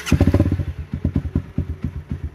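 Honda CRF250L's fuel-injected single-cylinder engine started briefly. It catches with a loud burst, then runs unevenly as its firing pulses slow and space out. It is kept running only a moment because the in-tank fuel pump is cooled by the fuel.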